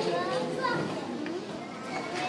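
Many children talking at once, an indistinct murmur of overlapping young voices.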